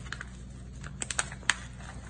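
Plastic pouch being pulled open by hand: a few sharp clicks and crackles, a quick cluster about halfway through and the loudest a moment later.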